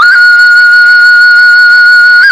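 Thai khlui (vertical bamboo fipple flute) playing solo. The note enters sharply with a quick upward flick and then holds as one long, steady, clear note.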